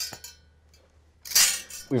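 A light clink of hard objects with a brief ringing tail, followed about a second and a half later by a short, high hiss.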